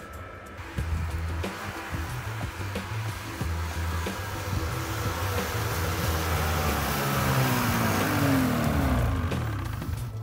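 Snowmobile approaching, its engine and track growing louder, with the engine note falling as it slows and pulls up near the end. Background music plays underneath.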